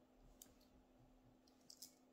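Near silence: room tone with a few faint clicks, one early and two close together near the end.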